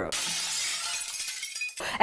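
Glass-shattering sound effect used as a segue between stories: a sudden crash of bright, high-pitched noise that fades away over about a second and a half.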